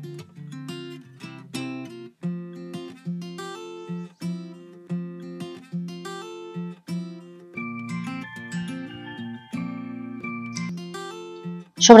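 Background music: a plucked acoustic guitar playing a gentle melody over low sustained notes, each note struck cleanly at an even pace.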